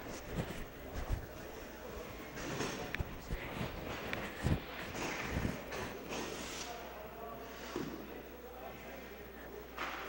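Ice hockey arena during a stoppage in play: faint distant voices over a noisy rink background, with scattered short knocks and clatter.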